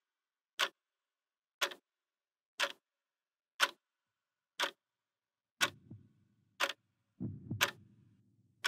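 A clock ticking steadily, once a second. A low, muffled thudding joins in under the ticks about two-thirds of the way in, and again near the end.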